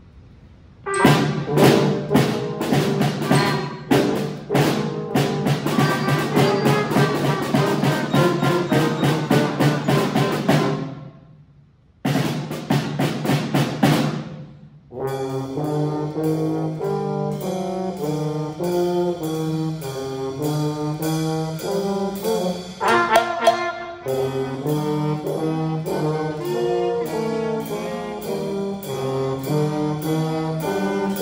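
Student band of flute, clarinet, trumpets, euphonium, tuba and drum playing a piece. It starts about a second in with sharp drum strokes under the ensemble, breaks off briefly twice near the middle, then goes on in longer held brass notes.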